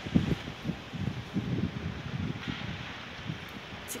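Wind buffeting a phone microphone outdoors, heard as irregular low rumbles over steady street noise.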